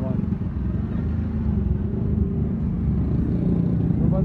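Road traffic: vehicle engines running close by as a steady low rumble.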